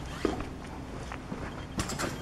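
Faint rustling from small accessories and packaging being handled, with a couple of light clicks near the start and near the end.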